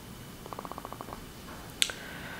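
Small mouth sounds from a person pausing in speech: a brief creaky rattle of rapid pulses, then a single sharp click near the end.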